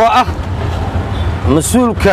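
Steady low engine rumble of a moving auto-rickshaw, heard from inside its open cabin under a man's short bursts of speech.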